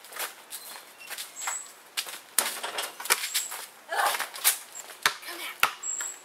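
Basketball being dribbled on an asphalt driveway: a run of sharp bounces, the last few coming about every half second, amid sneaker scuffs on the pavement.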